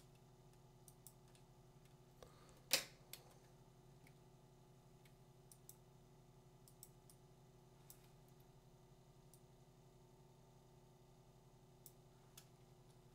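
Near silence over a steady low hum, with a few faint computer mouse and keyboard clicks and one sharper click a little under three seconds in.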